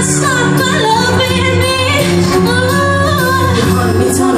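Live pop music: a woman singing sustained, sliding vocal lines into a handheld microphone over loud backing music with a steady bass.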